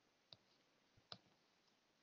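Near silence: room tone with two faint short clicks about a second apart.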